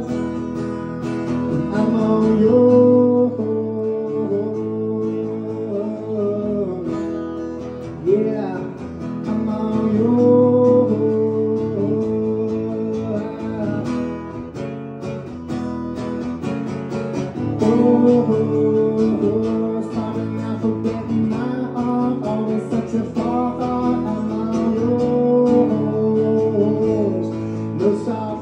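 Acoustic guitar strummed through a live PA, a repeating chord phrase coming round about every seven to eight seconds as the song plays out.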